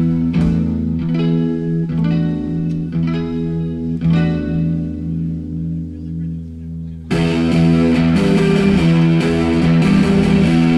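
Live garage-rock band opening a song: distorted electric guitars play a repeating riff alone, then about seven seconds in the drums and full band come in suddenly and much louder.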